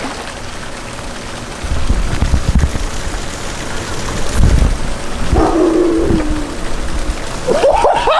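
Wind rumbling and buffeting on the microphone over a steady hiss. About five seconds in comes a short, drawn-out, low call.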